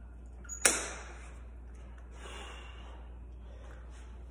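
A single sharp clack a little over half a second in, with a brief ring-out, from a lifting belt's metal buckle being snapped shut. A softer rustle of movement follows a couple of seconds later.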